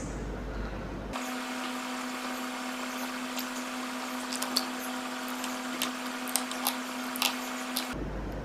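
A spoon stirring thick cornstarch-and-water oobleck in a glass bowl, giving a few faint clicks against the bowl, over a steady hum.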